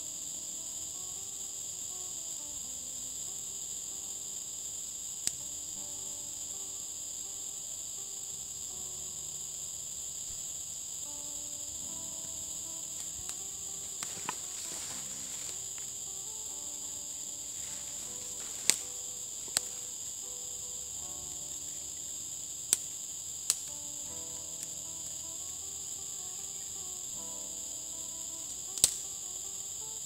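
Steady high-pitched chorus of insects shrilling in several layered bands, with faint background music underneath. A handful of sharp snaps cut through it: one about five seconds in, a cluster past the middle, and one near the end.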